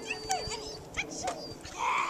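Corgi giving a run of short yips and whines, about four in under two seconds, as it strains on its leash. A louder burst of noise comes near the end.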